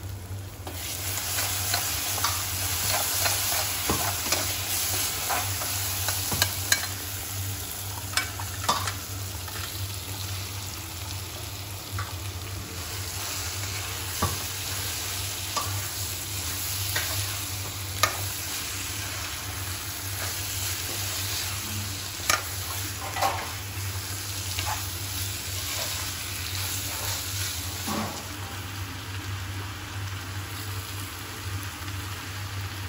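Masala sizzling and frying in a kadai while a spatula stirs it, with scattered clicks and knocks of the spatula against the pan. The sizzle starts about a second in, and chopped ridge gourd and potato are tipped in and mixed partway through.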